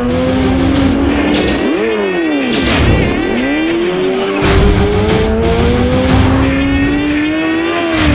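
Motorcycle engine revving, its pitch sweeping down and back up twice, then climbing steadily through the second half, under dramatic music with several sharp swooshing hits.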